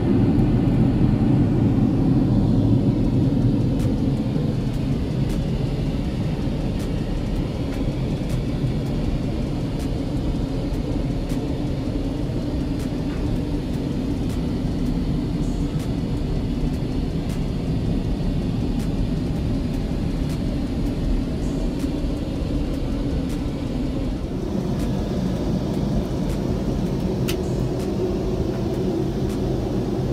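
Steady low rumble of a Boeing 787 Dreamliner's cabin in cruise flight, engine and airflow noise heard from inside the aircraft. The tone of the rumble shifts about three-quarters of the way through, with faint clicks here and there.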